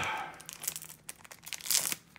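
Foil Pokémon booster pack wrapper crinkling as it is torn open by hand: scattered crackles, with a louder burst near the end.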